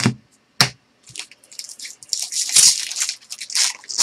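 Two sharp taps in the first second, then the foil wrapper of a pack of trading cards crinkling and tearing as it is opened by hand, loudest in the second half.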